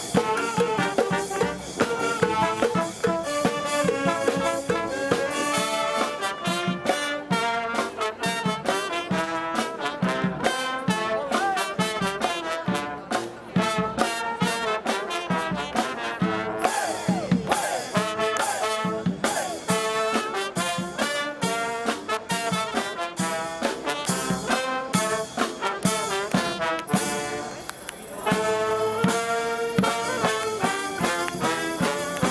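A xaranga street brass band playing: saxophones, trumpets, trombones and a sousaphone over bass drum and snare, with a steady beat. The music drops off briefly near the end, then the full band comes back in.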